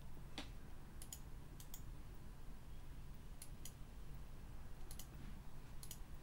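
Faint, scattered clicks of a computer mouse, about ten of them at irregular intervals, some in quick pairs, over a steady low room hum.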